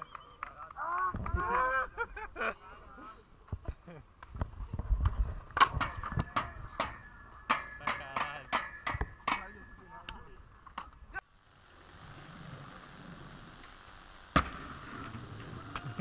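Voices shouting, then a rapid, uneven run of sharp knocks. About eleven seconds in this gives way to steady outdoor noise, broken by one sharp clack.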